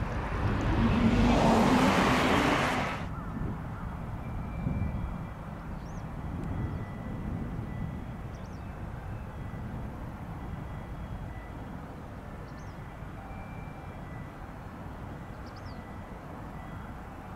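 A train passing close by: a loud rushing noise over a low hum, which cuts off suddenly about three seconds in. After that, a steady low outdoor rumble with a few faint high chirps.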